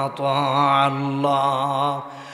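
A man chanting a Quranic verse in Arabic in a slow, drawn-out melodic recitation, holding one long wavering note.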